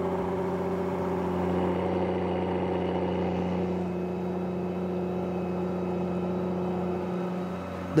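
Challenger MT765B rubber-tracked tractor's diesel engine running steadily under load while pulling an eight-furrow plough through stubble at working depth.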